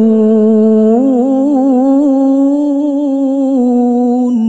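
A man's voice in tilawah, melodic Quran recitation, holding one long drawn-out note with small wavering ornamental turns.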